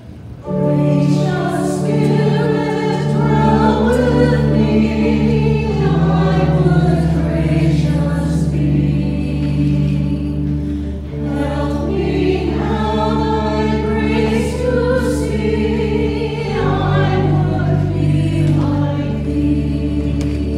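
Church choir singing together in parts over sustained organ accompaniment, a deep bass note joining about three seconds in.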